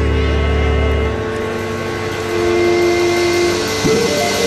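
A held chord of steady droning tones, with a deep bass drone underneath that drops out about a second in.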